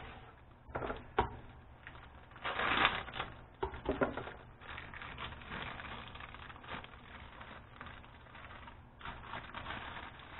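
A clear plastic bag of dry fish batter mix crinkling and rustling in the hands as it is pulled open and its powder shaken out. There is a click about a second in, the loudest rustle comes about three seconds in, and soft steady crinkling follows.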